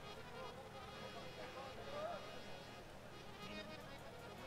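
Faint background between songs: a steady low buzz with faint distant voices.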